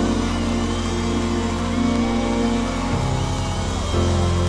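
Live soul band holding sustained chords over a steady bass, the bass notes changing about three seconds in.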